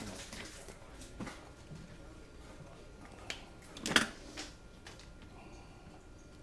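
A few light knocks and clicks of tools and parts being picked up and set down on a workbench, the loudest about four seconds in.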